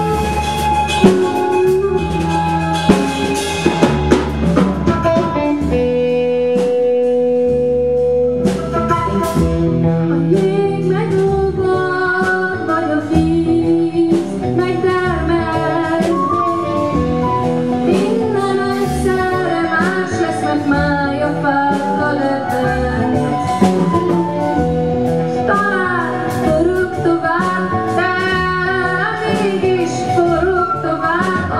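A live band playing with drum kit, electric guitar and bass guitar. A woman's voice sings melodic lines over them, more prominently in the second half.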